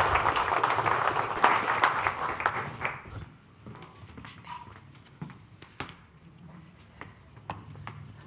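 Audience applauding, dying away about three seconds in. After that the room goes quiet apart from scattered light knocks and footsteps.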